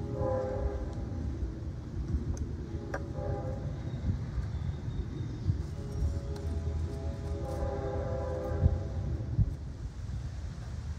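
Train horn sounding three times, a long blast, a short one and another long one near the end, over a steady low rumble of the passing train. A sharp click comes about three seconds in.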